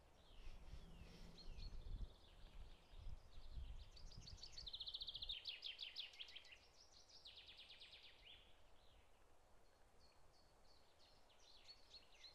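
Faint birdsong: a string of chirps, with a rapid trill about four to five seconds in. Low wind rumble on the microphone during the first half.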